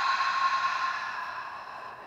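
A woman's long, slow exhale through the mouth, a soft breathy hiss that fades away over the first second and a half or so. It is the out-breath of a deep yoga breath.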